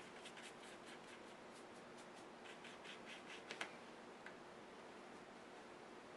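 Faint, light strokes and dabs of a paintbrush on paper, in two short runs, with one sharper tick a little past the middle.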